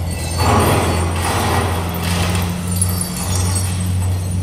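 Broken plate glass of a shop window tinkling and clinking as the shards fall and settle on the floor, loudest from about half a second in and again around two seconds in, over a steady low hum.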